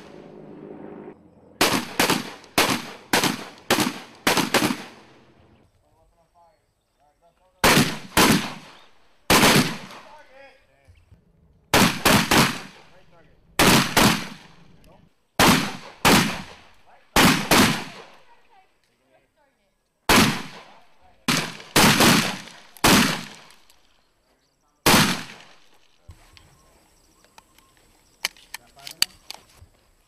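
M1014 (Benelli M4) semi-automatic 12-gauge combat shotguns firing: about twenty loud shots, mostly in quick runs of two to six, each with a short ringing echo, separated by pauses of a second or more. A few faint clicks follow near the end.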